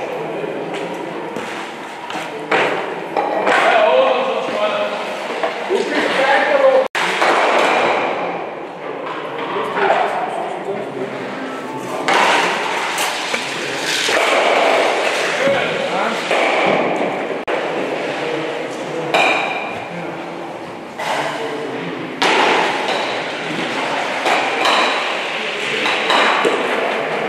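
Several sharp clacks and thuds of stocks being placed and colliding on the court, in a reverberant hall, over background talk.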